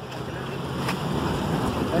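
A motorcycle engine running close by, a steady low hum under an even hiss of street and wind noise.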